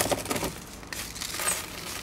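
Small plastic plant pot being handled and tipped onto its side, with the gritty pumice and lava-rock potting mix inside crunching and crackling. The crackles come irregularly and are densest at the start.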